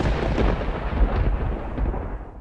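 A crash of thunder with a deep rumble, dying away near the end.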